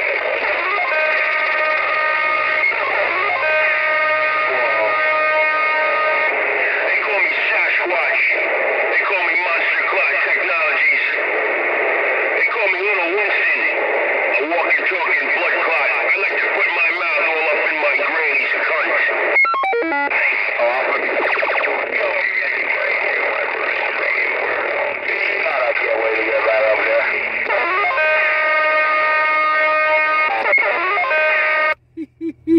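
Magnum S-9 CB radio's speaker on channel 19 carrying a crowded, distorted transmission: music with guitar and garbled, overlapping voices, thin and band-limited like a radio. Steady held tones sound near the start and again near the end.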